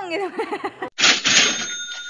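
Cash-register 'ka-ching' sound effect edited over the video. A sudden jangle about a second in is followed by a bell-like ring that fades out.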